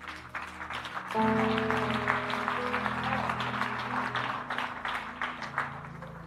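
Congregation applauding, with a held musical chord entering about a second in and the whole slowly fading toward the end.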